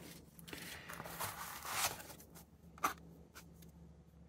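Faint rustling and scraping of paper and cardboard packaging as a weapon light is lifted out of its foam-lined box, with a single sharp click near the end.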